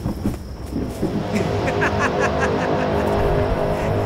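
Jeep engines running as the vehicles sit with headlights on, under a film score with a quick, steady ticking beat.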